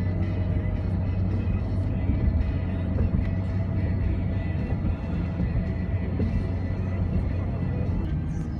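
Steady low rumble of road and engine noise heard from inside a moving car, with music playing along.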